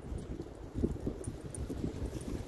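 Wind rumbling on a phone's microphone outdoors, with a few faint rustles about a second in.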